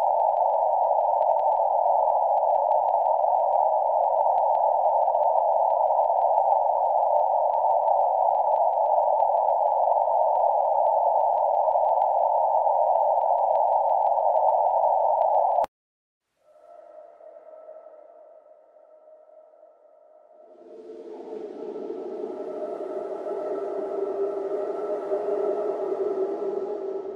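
Loud, steady rushing hiss, muffled and narrow like filtered static, with a faint thin high whine above it; it cuts off suddenly about 16 seconds in. After a short gap, quiet held tones come in and an eerie ambient music swell builds up over the last few seconds.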